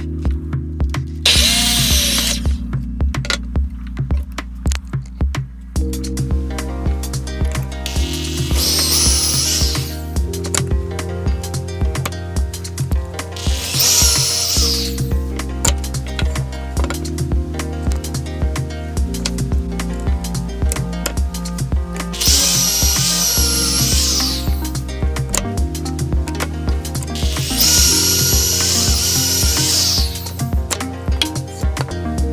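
Background music with a steady beat, over which a drill bores pocket holes through a pocket-hole jig into a wooden cleat in four whining bursts of one to two seconds each, the last running into the end. A shorter burst of tool noise comes about a second in.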